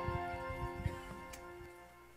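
The worship band's last held chord fades away over about two seconds. Under it come a few soft thumps and clicks as people sit down in their chairs.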